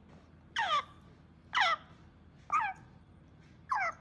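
Two-month-old African grey parrot chick giving short food-begging calls while being hand-fed from a syringe: four calls, each falling in pitch, about one a second.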